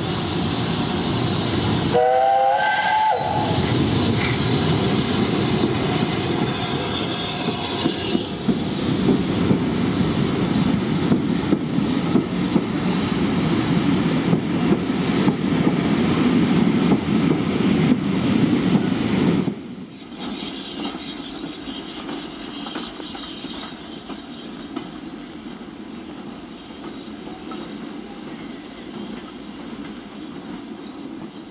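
A steam locomotive gives a short whistle about two seconds in, then runs close past hauling its coaches with a steady rumble and the clatter of wheels over the rail joints. Partway through, the sound drops abruptly to a much quieter, distant railway background.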